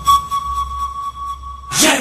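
Title-sequence sound design: a high, thin tone that pulses quickly and then holds steady over a low hum, cutting off sharply near the end, where a loud sudden hit breaks in.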